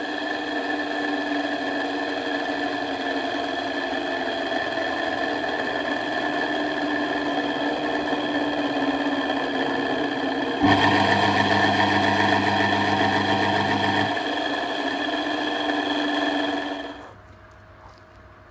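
The electric drive motor of a Myford ML7 lathe running steadily with no load, a hum with a whining, rough edge from its motor bearings, which the owner suspects have seen better days. It gets louder about two-thirds of the way through and dies away near the end.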